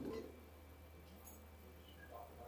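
Near silence: room tone with a steady low hum, and a brief faint sound at the very start.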